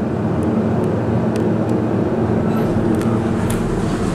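Elevator cab ventilation fan running with a steady whir and low hum, with a few faint clicks.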